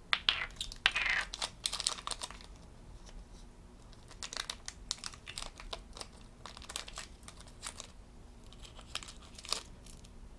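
Small plastic toy charm and its wrapping handled in the fingers: crinkling and clicking, busiest in the first two seconds or so, then scattered small clicks.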